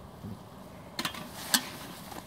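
Two sharp metal clinks about half a second apart, the second louder: a camping kettle set back onto the mesh pot holder of a homemade tin-can wood-gas stove after it has been refuelled with twigs.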